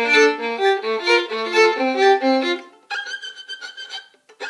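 Solo violin playing a quick run of bowed notes, then about three seconds in a thin, high sustained note held for about a second. This is the high 'grab' passage played literally as written notes, the wrong way, instead of as a dissonant effect.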